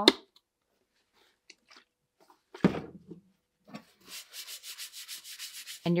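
Faint clicks of the alcohol bottle's plastic cap being opened, a short knock, then about two seconds of quick, rhythmic rubbing and rustling of a paper towel being handled.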